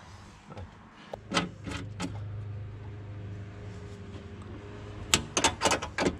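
Metal bolts and eye bolts clinking and knocking as they are handled against a steel drawer frame: a few single knocks, then a quick run of clicks near the end. Underneath is a steady low hum that grows louder for a few seconds in the middle.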